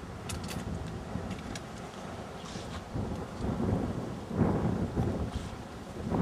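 A low rumbling noise that comes in uneven surges, growing louder in the second half and stopping suddenly at the very end.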